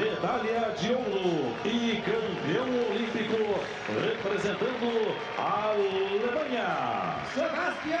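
Speech throughout: a voice talking without pause, with no other distinct sound standing out.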